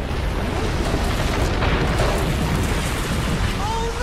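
Avalanche sound effect in a cartoon: a loud, steady rumbling roar of snow rushing down the hillside, with a voice crying out near the end.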